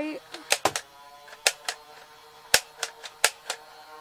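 Nerf Barricade's battery-powered flywheel motor spinning with a steady hum, while a string of sharp clicks comes from the trigger being pulled again and again; the blaster is not firing.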